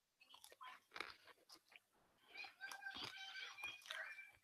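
Faint irregular crunching close to the microphone, a person chewing crisps, with faint steady high tones joining in the second half.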